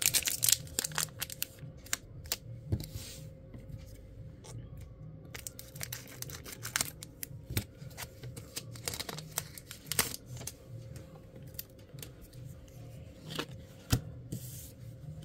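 The foil wrapper of a Pokémon trading card booster pack being torn open by hand. It crinkles, with a long run of sharp, irregular crackles and tears.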